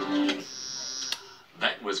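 Quiz-show countdown clock music, cut off about half a second in by a contestant's buzzer: a steady, high electronic tone lasting about a second that stops the clock. Heard through a television's speaker.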